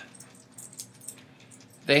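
Faint crinkling and small clicks of a plastic binder pouch on its cardboard header card being handled, scattered through the pause in speech.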